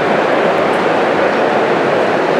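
Loud, steady background noise with no distinct events, the same din that runs under the whole talk in this poorly recorded venue.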